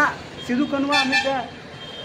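A man's voice speaking briefly in the middle, one drawn-out word around a second in.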